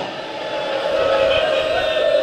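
A man's voice holding one long, steady sung note in a chanted mourning elegy, slowly getting louder.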